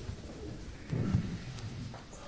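A group of people shifting about in a room, with low thumps and rumble, and a brief low murmur from a voice about a second in.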